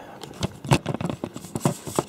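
Handling noise on a desk: a run of light, irregular clicks and taps with some rustle, about one every quarter second or so, as equipment is moved about by hand.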